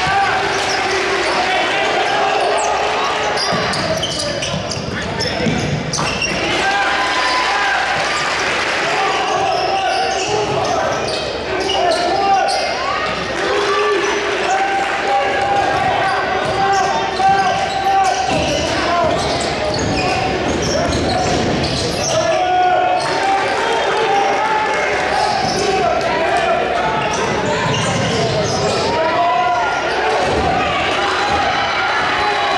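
Basketball game sound in a gymnasium: a basketball dribbled on the hardwood court, with crowd and player voices throughout.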